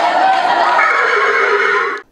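A loud, drawn-out, horse-like whinny voiced on stage by an actor in a horse-head costume, mixed with other actors' voices; it cuts off suddenly at the end.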